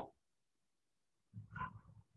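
Near silence in a pause between spoken phrases, broken about a second and a half in by a brief soft vocal sound from the speaker, like a breath or throat noise before he speaks again.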